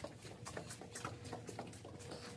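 Soft footsteps walking along a carpeted corridor: a faint, even series of steps.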